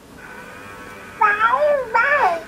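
Talking Baby Alive doll's electronic baby voice: one short, high-pitched babyish utterance that rises and falls in pitch, starting about a second in after a faint steady hum.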